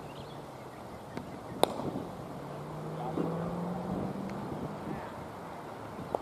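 Open-air background noise with a low steady hum through the middle and one sharp knock about one and a half seconds in, with a couple of fainter clicks.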